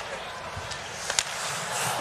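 Ice hockey arena crowd murmur, swelling toward the end, with a few sharp clacks of sticks and puck on the ice; the loudest clack comes about a second in.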